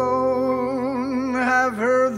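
Male vocalist singing a slow jazz ballad line with a wide vibrato over sustained piano accompaniment, with a short break in the phrase near the end.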